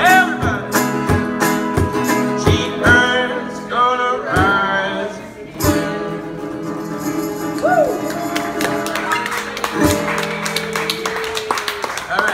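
Solo acoustic guitar strummed in rhythmic chords under a man singing the last lines of a song. About six seconds in the strumming stops and the final chord rings out under a short sung note, and clapping begins near the end.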